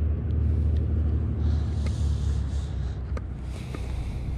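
Steady low rumble, with a few faint clicks and soft rustling over it.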